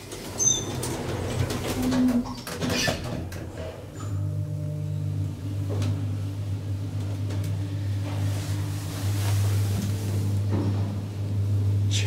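Schindler traction elevator, modernised by Hisscraft: the car door closes with a few clunks, then about four seconds in the lift starts and the car travels up from the entry floor with a steady low machine hum.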